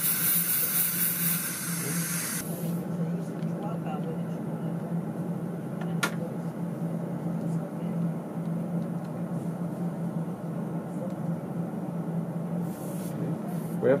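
Dental air syringe blowing a steady hiss of air to dry the implant site, cutting off suddenly about two seconds in. After it a steady low hum remains, with one sharp click about six seconds in.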